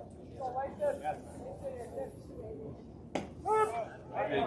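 Spectators' voices at a baseball game, with a single sharp crack a little over three seconds in as a pitched baseball reaches home plate.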